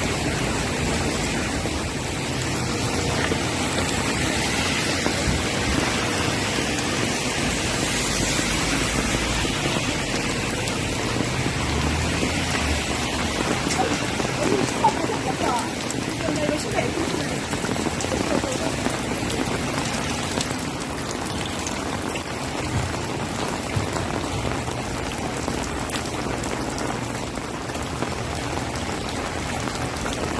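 Steady rain falling on a wet street and stall covers, with faint voices of passers-by in the background.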